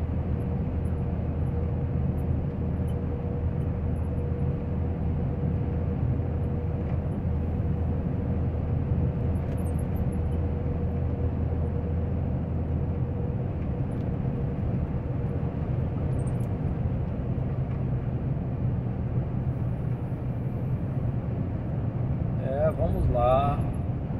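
A semi-trailer truck cruising along a highway: a steady low engine drone with road noise, and a faint steady whine that fades out a little over halfway through.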